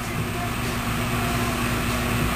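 Steady low hum with an even hiss and low rumble of background noise.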